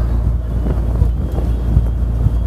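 Wind buffeting the microphone over the steady low drone of a passenger boat's engine.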